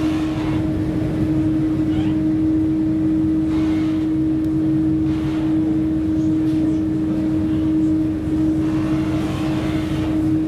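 Steady drone of a ferry's engines, a constant hum over a low rumble, heard from on board.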